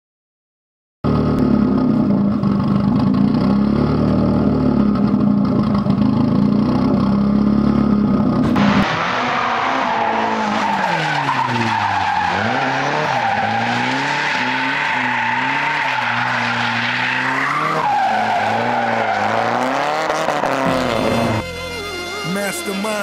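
Turbocharged Nissan Sil80 (S13) drift car's engine, starting about a second in and holding a steady high rev. From about nine seconds in the revs rise and fall over and over as the car is driven sideways, with tyre squeal.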